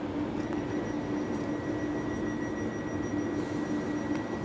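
Stationary passenger train standing at a platform, its onboard equipment giving a steady hum with a constant low tone. A steady high-pitched tone joins about half a second in.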